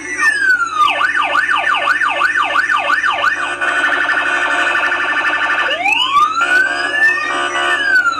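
Police siren sound effect in a news programme's title sting: a slow wail rising and falling, then a fast yelp sweeping up and down about three times a second, then a steady rapid warble, and a long rising wail again near the end.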